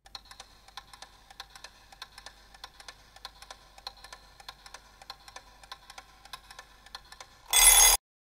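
Countdown-timer sound effect: faint, rapid ticking over a low steady tone, ending in a loud, short ring about half a second long near the end.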